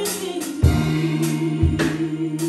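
Two women singing a gospel worship song into microphones with live band accompaniment: a held low note underneath and drum hits about a third of the way in and again near the end.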